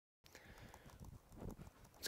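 Dead silence for a moment, then faint room tone with a few soft knocks and taps; the loudest comes about a second and a half in.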